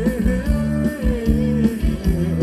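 Live band playing Thai ramwong dance music: a gliding melody line over electric bass and guitar with a steady beat.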